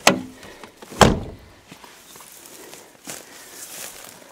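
Car door of a scrapped Mazda 323 opened with a click, then slammed shut about a second in, followed by faint footsteps.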